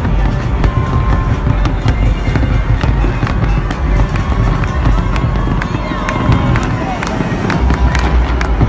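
Fireworks going off in quick succession: many sharp bangs and crackles over a deep, continuous rumble.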